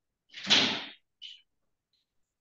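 A door being moved: one rush of sound lasting under a second, followed by a brief, fainter high scrape.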